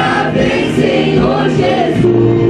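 Youth worship group singing a gospel song together into microphones, several voices blended over a steady low accompaniment.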